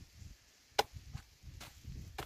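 Machete blows chopping into a thick banana trunk: one sharp strike a little under a second in, then two fainter ones.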